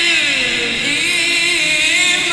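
Quran recitation: a single voice chanting Arabic in a long, drawn-out melodic line, the pitch sliding down and back up, then held.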